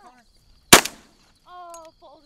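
A single loud shotgun blast about three-quarters of a second in, fired at a teal flying overhead, with a short echoing tail.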